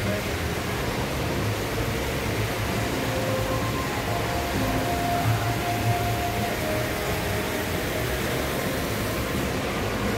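Steady room ambience of a large indoor hall: an even rushing hiss over a low hum, as from ventilation, with a few faint drawn-out tones in the middle.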